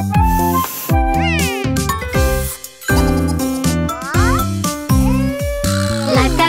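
Children's cartoon background music with a cartoon cat character's meowing, crying voice gliding up and down over it, about a second in and again around four seconds.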